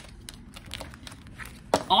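A deck of tarot cards being handled and set down on a tabletop: light rustling with a scatter of small clicks, and a sharper tap near the end.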